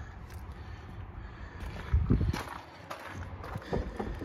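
Low rustling, shuffling and handling noise as someone climbs down out of a van's cab, with a louder bump about two seconds in and a smaller one near the end.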